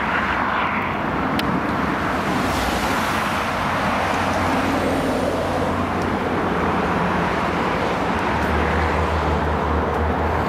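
Steady noise of road traffic going past, with a deeper engine drone from a heavier vehicle coming in about eight seconds in.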